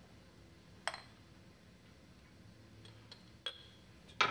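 A few small clicks and clinks in a quiet room as a glass espresso shot cup is handled and set down on a countertop: one sharp click about a second in, then a couple of lighter taps near the end.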